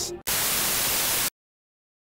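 A burst of static hiss lasting about a second, cutting off suddenly into dead silence.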